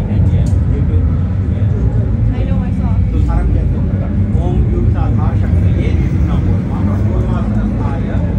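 A voice chanting Hindu mantras, with a steady low rumble beneath.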